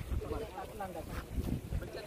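Indistinct talking from several people in the background, over a low wind rumble on the microphone.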